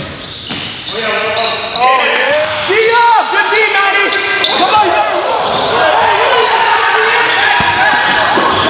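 Live pickup of a basketball game in an echoing gym: a basketball bouncing, many short sneaker squeaks on the court floor and players' shouts.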